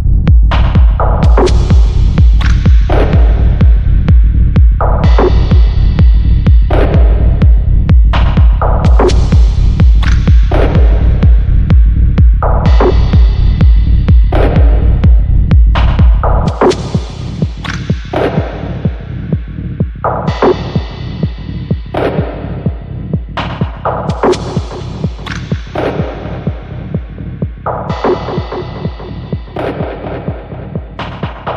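Electronic dance track (techno): a steady kick-drum beat about twice a second, with bright synth stabs that fade away about every two seconds. About halfway through, the deep bass line drops out and the track gets quieter, leaving the kick and the stabs.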